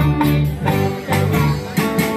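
Live band playing an instrumental stretch with no singing: bass guitar holding low notes, congas and drum kit keeping a steady beat, and strummed guitar.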